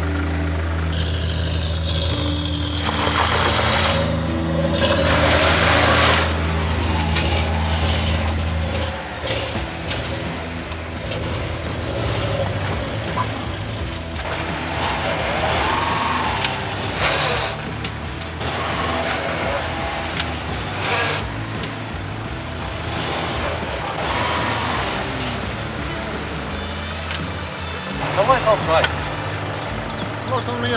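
Background music with a steady bass line over a car engine running and revving off-road, with voices near the end.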